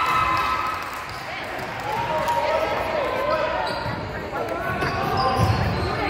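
A basketball bouncing on a hardwood gym floor amid the voices of players and spectators calling out during a game.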